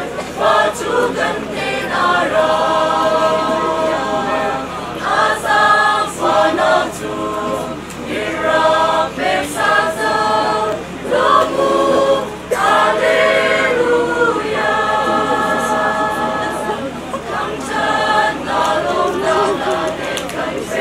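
A mixed choir of young men and women singing together.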